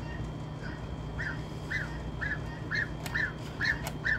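Goose giving short, high peeping calls about twice a second, growing louder from about a second in.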